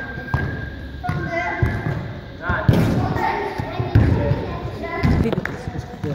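Soccer ball being juggled: a series of dull thuds, roughly one to two a second, as the ball is kept up off a child's feet, knees and chest, in a large echoing indoor hall.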